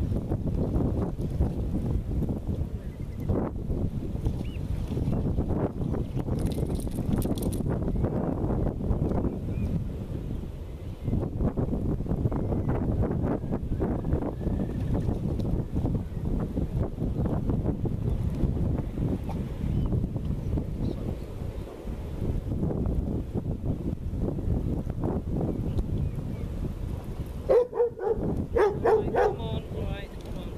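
Steady wind rumbling on the microphone. A dog gives a few short barks near the end.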